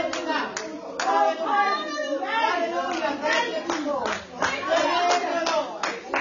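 Hand clapping, sharp claps at an uneven pace, over people's voices.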